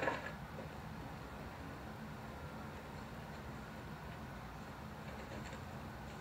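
Low, steady background rumble with no distinct events, after a brief sound right at the start.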